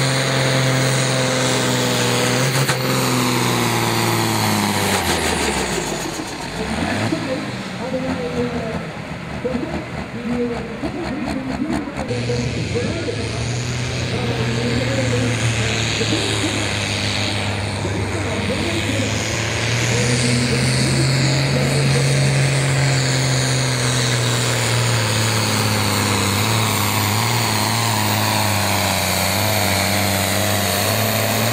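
Pulling tractors' engines. One engine at high revs winds down about five seconds in. After a stretch with a voice over it, a second tractor's engine comes in about twelve seconds in, rises in pitch around twenty seconds as it pulls the sled, and then holds high revs.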